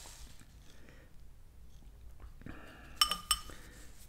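Quiet room tone, then a metal spoon clinks twice against a ceramic soup bowl about three seconds in, each clink ringing briefly.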